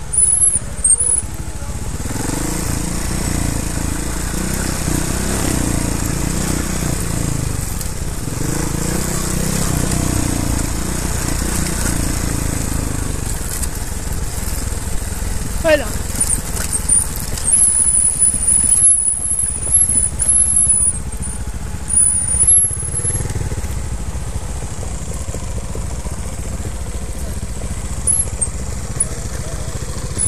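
Trials motorcycle engine running at low to moderate revs, its note rising and falling with the throttle as the bike rides down a rough dirt forest trail.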